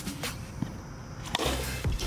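A plastic bat striking a plastic Blitzball once, a sharp short knock about a second and a half in, fouling the pitch off.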